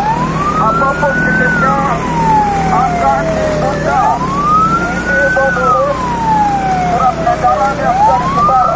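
A police siren wailing, rising over about a second and a half then sliding slowly down, in two full cycles about four seconds apart, over the steady hum of a motorbike engine.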